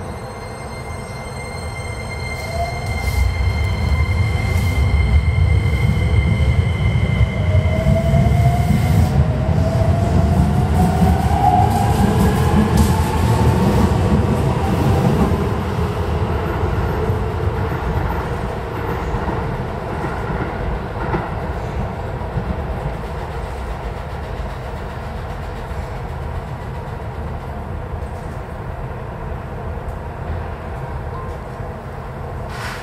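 Keikyu electric train pulling out of the station: a low rumble and wheel noise build up, with a motor whine that rises in pitch as it speeds up. It is loudest over several seconds around the middle, then eases off as it leaves.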